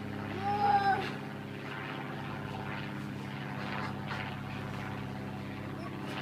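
A steady low mechanical hum from an engine or motor, with a toddler's brief high vocal sound in the first second.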